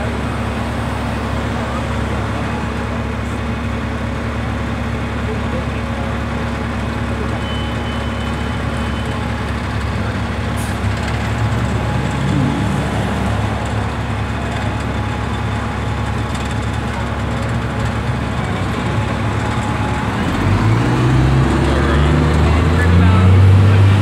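Street traffic: cars and a pickup truck drive past close by over a steady low engine hum, with voices in the background. Near the end a nearby vehicle's engine gets louder and rises in pitch as it pulls away.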